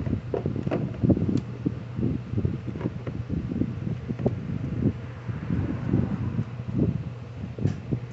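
Hands screwing the plastic fuel cap onto a Troy-Bilt TB430 leaf blower's tank and handling the blower: a run of irregular light plastic clicks and knocks over a steady low hum.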